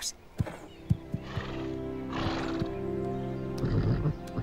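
Soft background music over the sounds of an animated horse: a few light hoof steps and two breathy blows from the horse, about one and two seconds in.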